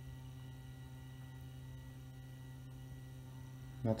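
iOptron CEM60 equatorial mount slewing in right ascension at its 64x rate, one of its lower speed steps. Its drive motor gives a steady hum.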